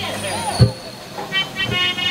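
Harmonium sounding short, broken chords in brief bursts, with a sharp deep thump about half a second in and a softer thump near the end.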